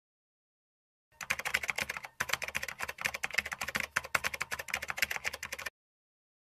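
Fast run of keyboard typing clicks, laid in as a sound effect under text being typed onto the screen. It starts about a second in, breaks off for a moment near two seconds, and stops abruptly shortly before the end.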